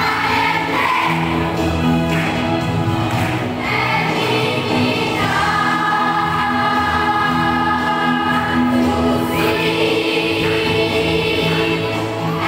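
Large children's choir singing together, with long held notes in the middle of the passage.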